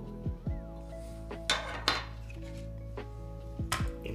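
Small hard keyboard case parts clinking and tapping as they are handled and set down on the desk, a few separate clinks, the sharpest about a second and a half in and near the end. Background music plays throughout.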